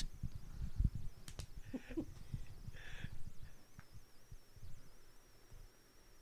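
Faint handling noise: soft low bumps and two brief rustles as a plastic water bottle is lifted and drunk from, under a faint high-pitched whine.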